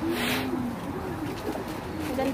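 Low, repeated cooing calls from a bird, with a brief rustle near the start.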